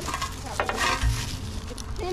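Footsteps crunching through dry grass and gravel, with scattered crackles and a low thump about a second in.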